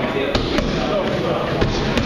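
Boxing gloves smacking against a trainer's focus mitts during pad work: a couple of quick, sharp hits early on and another near the end, over people talking in the gym.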